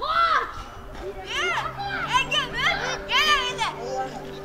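Children shouting and calling out at play: a high call right at the start, then a quick run of high calls that rise and fall in pitch.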